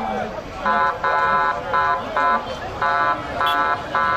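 A vehicle horn sounding in a run of about six short, steady-pitched blasts, over the voices of a crowd.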